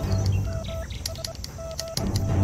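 Morse code from a field radio telegraph: a single steady beep keyed on and off in short and long pulses as a message is sent, over background music.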